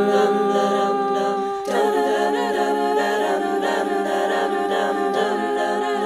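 Multi-tracked a cappella harmony in one boy's voice: several layered wordless vocal parts holding sustained chords, with a short break about one and a half seconds in before the next chord and moving upper lines.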